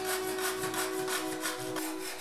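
A thin-bladed hand saw cutting through an acrylic sheet, the blade scraping the plastic in quick, even back-and-forth strokes, about four a second.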